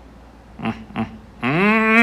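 A man's wordless vocal sounds: two short bursts, then a drawn-out sound of the voice that rises in pitch near the end.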